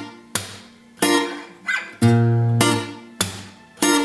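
Ibanez PF15ECE acoustic-electric guitar playing a reggae pattern on a B-flat barre chord, repeating about every two seconds. A low bass note is plucked, then a sharp percussive slap on the strings, with the fretting hand relaxed so they are muted. Then three strings are plucked together and left to ring.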